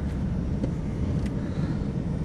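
Steady low rumble of a car in motion, engine and road noise heard from inside the cabin, with a few faint clicks.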